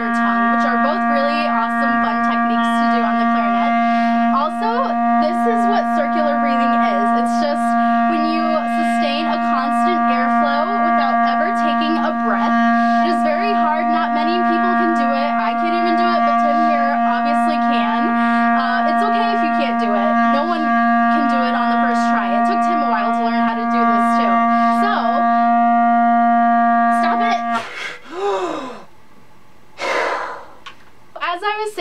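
Clarinet holding one low note without a break for nearly half a minute, sustained by circular breathing; the note cuts off suddenly shortly before the end.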